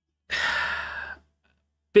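A man's heavy sigh: one breathy exhale of about a second that fades away.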